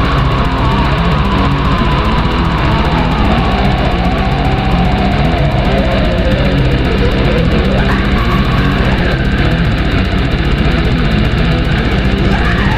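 Black metal: dense distorted guitars and drums at a constant loud level, with a long melodic line falling slowly in pitch over the first half.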